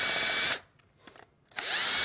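Cordless drill with a Phillips bit loosening the screws of an oar sleeve: two short bursts of motor whine, each rising in pitch as it spins up. The first stops about half a second in and the second starts about a second and a half in, with a few faint clicks in the gap.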